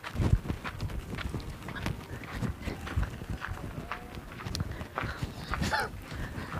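Irregular scuffs and crunches of footsteps on dry, leaf-strewn dirt ground, with a few short clucks from a chicken.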